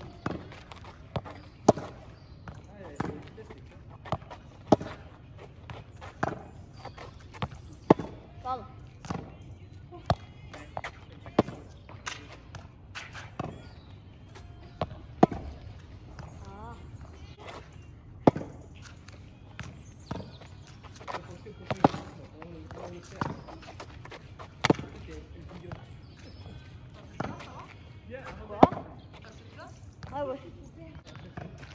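Tennis ball struck by a racket and bouncing on asphalt, a rally of sharp hits coming irregularly about every one to two seconds.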